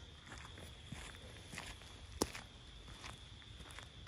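Footsteps on a gravel path, a person walking at an even pace, each step a faint crunch, with one louder step a little past halfway.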